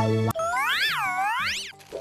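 Comic sound-effect sting: a brief held musical chord, then a sliding 'boing' tone that swoops up and down twice before fading.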